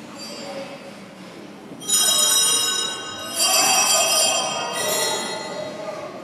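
A small bell rung in three bursts, each about a second long, starting and stopping abruptly.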